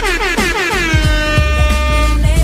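DJ air horn effect over a hip-hop beat: a many-toned horn blast slides down in pitch, settles about a second in and holds, with deep bass kicks thumping underneath.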